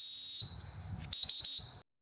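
A high, steady electronic-sounding tone sounded twice as an intro sound effect: a first blast of about half a second, then a second one of about half a second, cutting off sharply before the end.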